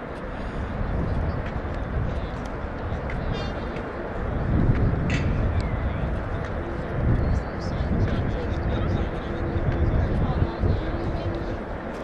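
Open-air ambience at an athletics track: a steady low rumble that swells and eases, with faint distant voices and no close sound standing out.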